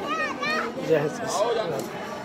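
People talking: high-pitched voices whose pitch bends and breaks, with no other distinct sound standing out.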